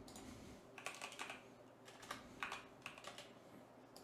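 Faint computer keyboard typing: a handful of scattered keystrokes, typing a short file name.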